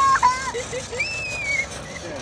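Young children shrieking and squealing while riding a spinning playground merry-go-round: a long high-pitched shriek cuts off just after the start, followed by a few short low laughs and another brief high squeal about a second in.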